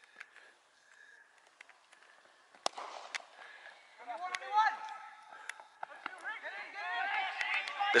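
A single sharp crack, a cricket bat striking the ball, about a third of the way in. Then distant voices shouting and calling, growing louder towards the end.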